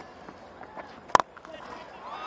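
A single sharp crack of a cricket bat striking the ball, a little past halfway, over quiet background noise.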